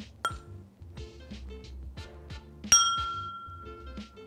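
Background music with a steady beat, and a glass clinking: a light clink just after the start, then a louder clink a little past the middle whose high ringing tone fades over about a second and a half.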